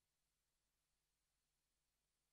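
Near silence: only faint steady hiss and a low hum from the recording chain.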